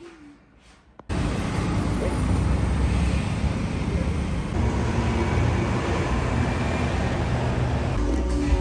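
City street traffic: a steady wash of road noise from passing cars that cuts in suddenly about a second in, after a quiet moment.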